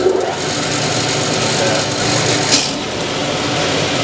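Clausing 6903 metal lathe starting up and running out of gear, its spindle and three-jaw chuck spinning through the variable speed drive. It comes on suddenly, then runs steadily, with a short sharp click about two and a half seconds in.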